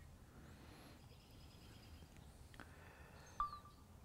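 Near silence: room tone, with one short, faint electronic beep about three and a half seconds in.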